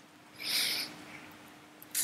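A voiceless, breathy "h" sound lasting about half a second, air pushed out through an open throat, starting about half a second in. It is the laryngeal consonant being demonstrated.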